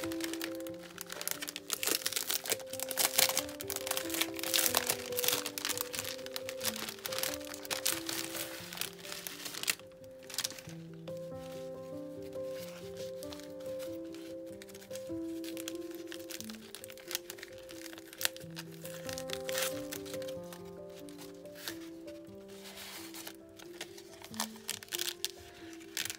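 Soft background music of slow, held notes, with a clear cellophane packaging bag crinkling and crackling as it is handled and opened. The crinkling is busiest in the first ten seconds and comes back near the end.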